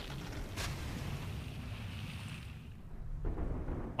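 Storm wind blowing hard, a rushing hiss over a steady low rumble; the hiss dies away about three seconds in, leaving the rumble.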